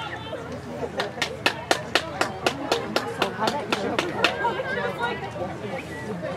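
A quick, even run of about fourteen sharp smacks, about four a second, lasting about three seconds, over people talking.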